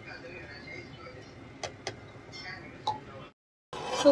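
A few light clicks as a clear blender jar knocks against a bowl while thick blended chutney is poured and tapped out of it, over a faint murmur of voices. The sound cuts out abruptly near the end.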